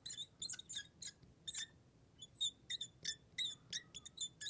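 Fluorescent marker squeaking on a glass lightboard as a word is handwritten: a quick series of short, irregular high squeaks, one for each pen stroke.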